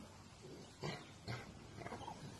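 Rottweiler making two short, faint huffs about half a second apart, with a fainter third near the end.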